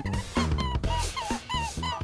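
A series of short squeaky whimpering calls, about half a dozen in two seconds, over a quiet background music track.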